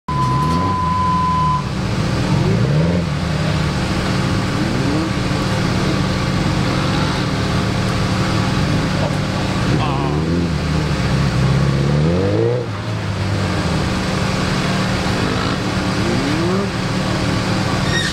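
Suzuki GSX1300R Hayabusa's inline-four engine revving up and dropping back again and again as the motorcycle accelerates and brakes through a tight cone course. A steady high beep sounds for about a second and a half at the very start.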